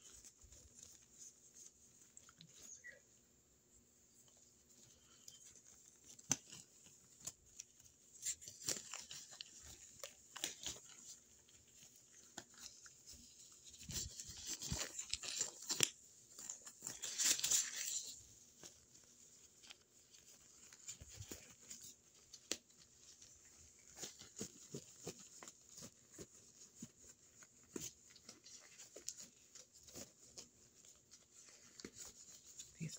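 Disposable exam gloves being pulled on close to the microphone: faint scattered crinkles and snaps, with a denser spell of rustling a little past halfway.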